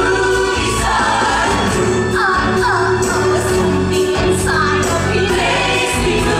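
Musical-theatre ensemble singing together with accompaniment, a long held note running under short falling vocal phrases.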